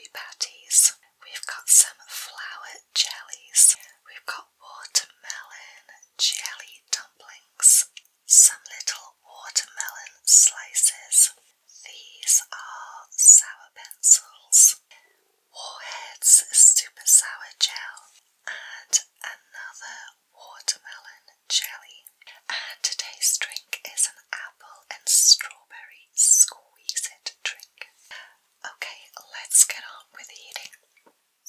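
A woman whispering close to the microphone, with sharp, hissing s-sounds: whispered speech only.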